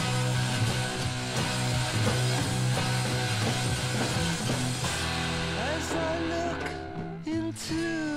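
Late-1960s psychedelic rock recording in an instrumental stretch without vocals: guitar over a sustained bass line and drums. The backing thins out in the last second or so.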